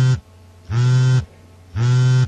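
Mobile phone ringing with a low, buzzy tone, sounding in three half-second pulses about a second apart.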